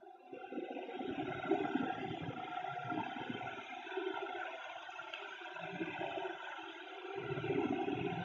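Steady low background noise with a faint hum, with no clicks or distinct events.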